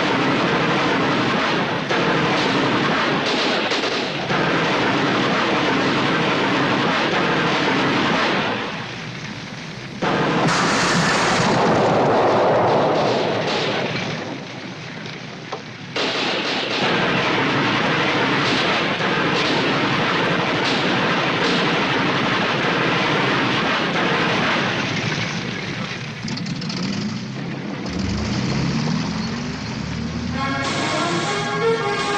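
Film battle soundtrack: a heavy .50-calibre Browning machine gun firing in long bursts, mixed with explosions and battle din. A rising musical swell comes in near the end.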